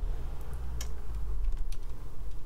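Light, sharp clicks, about two a second, over a steady low hum.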